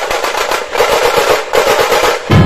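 Tasha drums of a Puneri dhol-tasha troupe starting suddenly in a fast roll of dense, rapid strokes, with little low bass from the dhols.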